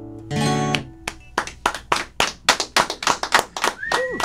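A final chord strummed on an acoustic guitar, ending the song and dying away within half a second. About a second in, a small group starts clapping, separate hand claps at an uneven pace.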